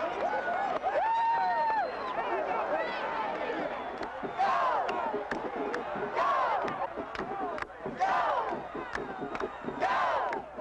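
A stadium crowd cheering and yelling, with single voices shouting long calls over it, one held yell about a second in.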